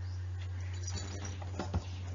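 Steady low electrical hum in the recording, with faint scattered clicks and a soft thump near the end.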